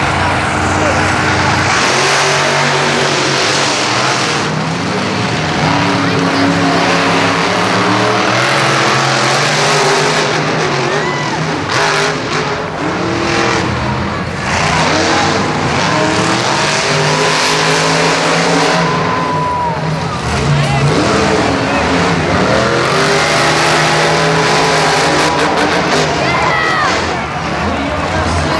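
Monster truck engines revving hard, rising and falling in pitch, echoing around a stadium, with voices over them.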